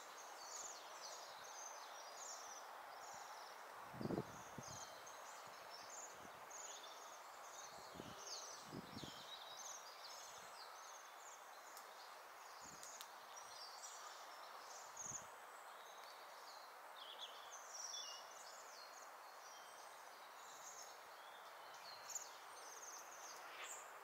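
Faint, high, thin trilling calls of Bohemian waxwings, many short calls one after another throughout, over a steady background hiss. A few low dull thumps break in, the loudest about four seconds in.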